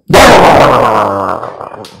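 A man growling loudly into a handheld microphone in imitation of an angry dog: one long rough growl that starts suddenly and fades over about a second and a half.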